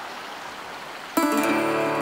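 Background music: an acoustic guitar chord is strummed about a second in and rings on. Before it there is a faint hiss of running river water.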